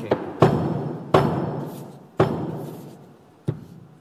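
A carved wooden pastry mould knocked hard against the work table to release a pressed Hainanese biscuit, four knocks, the last one lighter. Each knock rings on and dies away over about a second.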